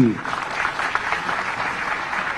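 Audience applauding, a steady, even clapping.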